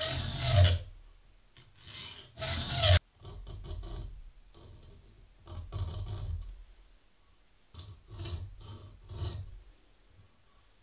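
Hand files scraping back and forth across the spine of a steel blank cut from a circular saw blade, filing notches for a decorative pattern. A few long, loud strokes come in the first three seconds, then softer, shorter strokes with pauses between them.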